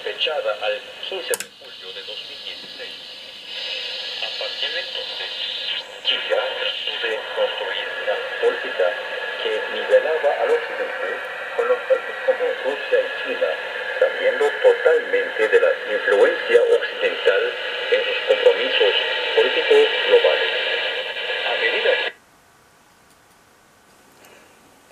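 Shortwave AM broadcast of a man speaking Spanish, received on a home-built shortwave receiver with a sharp IF filter and heard through its loudspeaker, with noise and faint steady tones under the voice. It cuts off suddenly about two seconds before the end.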